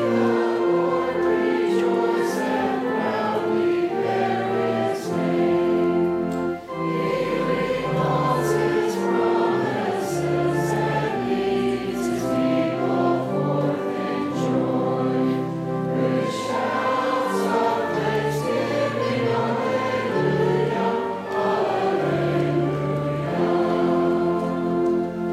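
A group of voices singing a hymn together, accompanied by an organ holding steady chords and sustained bass notes that change every second or two.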